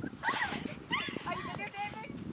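Voices talking, with no clear words.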